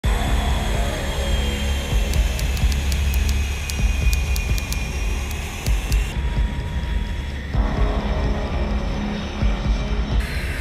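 Background music over the whine of jet fighter engines from F/A-18 Hornets taxiing. The mix changes abruptly twice, about six and about seven and a half seconds in.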